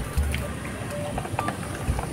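Light background music, with a few sharp plastic clicks and knocks as a toy car is set down into a plastic toy truck's cargo bed.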